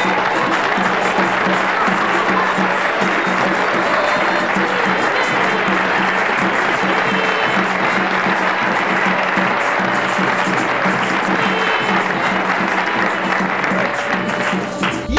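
Dense, steady clapping and applause from a crowd over mento band music.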